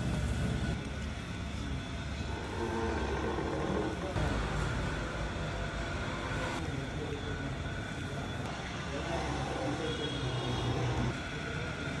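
Motor-driven wooden oil press (chekku) running, its wooden pestle turning and grinding sesame paste in a stone mortar, with a steady low rumble.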